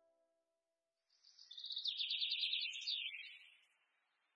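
A songbird singing: a quick run of high chirping notes starting about a second in, swelling, then falling in pitch and fading before the end. The tail of soft background music fades out at the very start.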